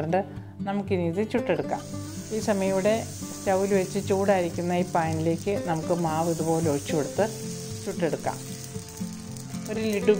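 Fermented rice batter for kallappam sizzling on a hot griddle, a steady hiss that starts about two seconds in as the batter is ladled on and spread. Background music plays throughout.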